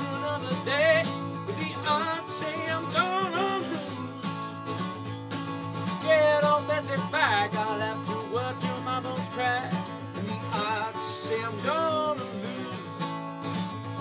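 Acoustic guitar strummed in a steady rhythm with a man singing over it, his voice wavering on held notes.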